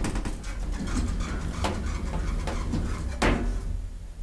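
Elevator machinery over a steady low rumble, with rapid clicking and rattling and three louder clunks.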